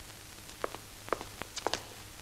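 A few faint, light taps and clicks, about five, irregularly spaced, over a faint steady hum.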